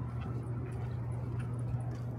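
Outdoor city ambience on a pedestrian footbridge: a steady low hum of the city with faint light footsteps of people walking.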